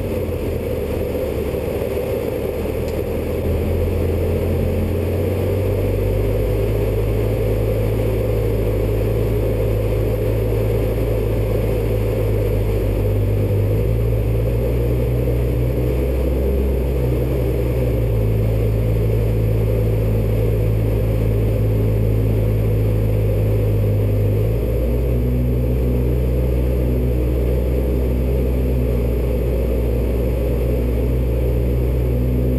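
Robin light aircraft's piston engine and propeller droning steadily, heard from inside the cockpit. The loudness rises slightly a few seconds in, and the low engine note shifts in pitch a few times.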